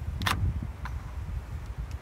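Rear hatch power door lock actuator of a 2010 Honda Fit, running on a newly fitted FC-280 motor, being tested: a short sharp clack about a quarter second in and a fainter click near the middle as the latch mechanism moves, over a steady low outdoor rumble.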